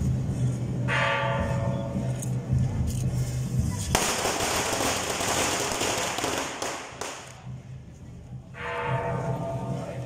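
Sounds of a Taiwanese temple procession: a held, pitched tone about a second in and again near the end, with a dense crackle of firecrackers starting suddenly about four seconds in and lasting about three seconds.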